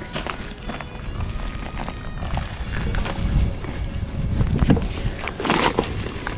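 Footsteps crunching on a loose gravel path, with faint background music under them.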